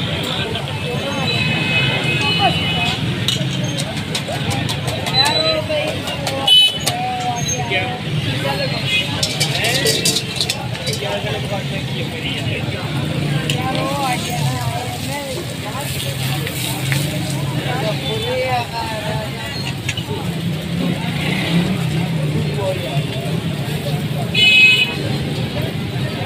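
Busy street ambience: steady traffic noise with car horns sounding now and then, and people talking in the background. Short clicks and scrapes from a metal spatula working egg on a steel griddle.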